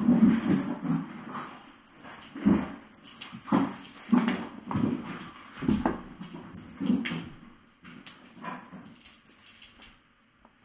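Kittens scampering and wrestling: repeated soft thumps and scuffles of paws and bodies on the floor and rug. Over them comes a rapid, high-pitched pulsing sound that runs through the first four seconds, then returns in two short bursts near the end.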